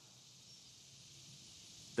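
Faint, steady outdoor background hiss, sitting high in pitch, with no distinct event in it.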